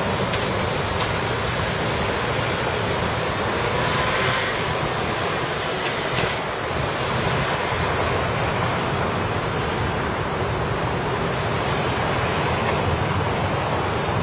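Steady city road traffic: a continuous, even rush of many cars passing on the road.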